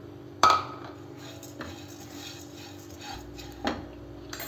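Utensil knocking against a non-stick kadhai as whole cumin and black peppercorns are stirred while dry-roasting. One sharp knock with a short ring about half a second in, then a couple of lighter knocks, over a faint steady hum.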